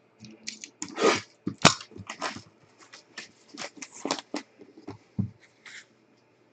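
Plastic shrink wrap being torn and crumpled off a trading-card box: a steady run of irregular crinkles and crackles, with the sharpest ones in the first two seconds.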